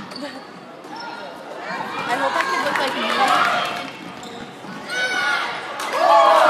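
Basketball being dribbled on a hardwood gym floor during play, with indistinct spectator chatter over it.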